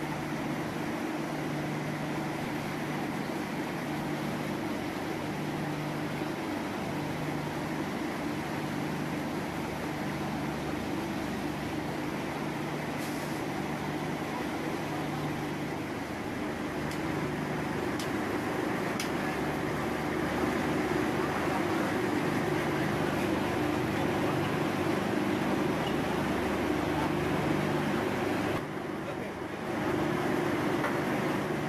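Steady machinery drone at a drilling rig: a constant low hum with a lower tone that cuts in and out every second or so. It grows a little louder about two-thirds of the way through and dips briefly just before the end.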